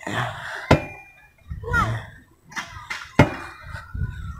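Outdoor leg-swing exercise machine in use: two sharp metal knocks about two and a half seconds apart as the swinging footplates hit their stops, over low rumble and handling noise.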